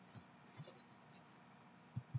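Near silence: faint room tone with soft scratching and a light click from a computer mouse being moved and clicked.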